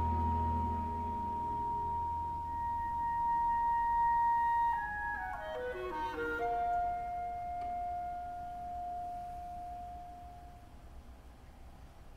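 Symphony orchestra in a quiet passage: a solo woodwind holds one long high note over soft low sustained notes, plays a quick descending run about five seconds in, then holds a lower note that slowly fades away, leaving a hush near the end.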